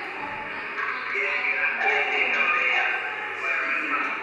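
A distant station's voice coming over an amateur radio transceiver's speaker, thin and narrow in tone as on single-sideband, over a haze of band noise. It gets louder about a second in, and the words are hard to make out through the interference.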